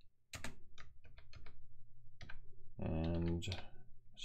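Computer keyboard keystrokes, a handful of separate key presses as a terminal command is typed. About three seconds in, a short voiced hum from a person.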